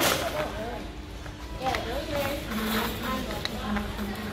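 Supermarket aisle sound: faint voices of other people in the store over the steady low rumble of a wire shopping cart being pushed across a tiled floor, with a few light clicks. The cart has a bad wheel that does not roll well.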